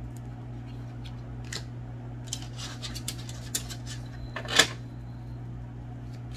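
Tarot cards being handled and shuffled: a run of soft slides and light flicks, the loudest a short swish about four and a half seconds in, over a steady low hum.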